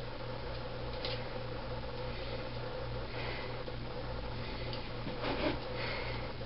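Steady low hum of room tone, with a few faint soft hisses about a second in, around three seconds and near the end.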